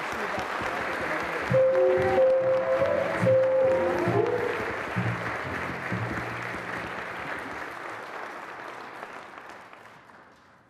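Audience applauding in a large hall, with a short burst of play-off music (a few held notes over a bass line) starting about a second and a half in and ending around the middle. The clapping dies away near the end.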